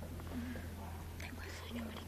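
Quiet whispering and low murmured voices with a few small clicks and shuffles, over a steady low electrical hum; no music is playing.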